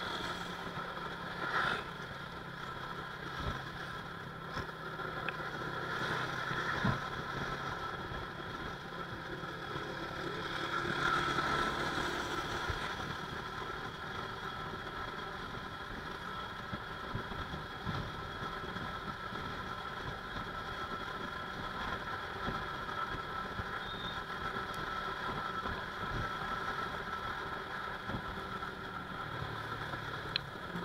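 Yamaha motorcycle's engine running at a steady cruise, heard from the rider's seat over road and wind noise, with a brief swell in level about ten to twelve seconds in.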